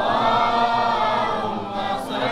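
A cappella group of male voices chanting a Maulid refrain together, many voices blending into one sustained melodic line.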